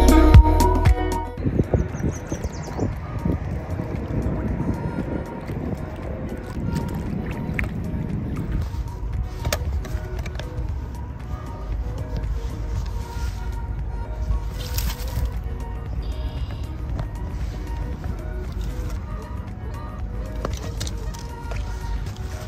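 Background music that cuts off about a second in, then a loud, uneven low rumble with scattered clicks, typical of wind buffeting a phone microphone and hands on the phone.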